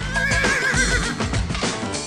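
A horse whinnying: one warbling, high call lasting about the first second, over background music.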